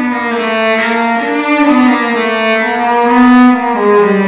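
Cello playing a slow bowed melody, holding each note for about half a second to a second and moving smoothly from one pitch to the next.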